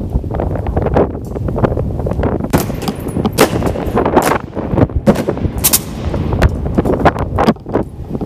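Honour guard soldiers marching in a ceremonial high step, their boots striking a stone floor in a string of sharp, irregular strikes. The strikes are loudest in the middle stretch and echo in a large domed stone hall.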